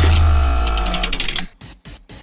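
Short electronic transition sting: a deep bass tone with a rapid run of ticks over it, fading out about a second and a half in, followed by a few faint ticks.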